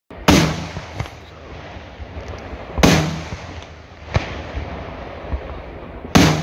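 Aerial firework shells bursting: two loud bangs, one near the start and one about three seconds in, with several smaller reports between and after them over a continuous rumble.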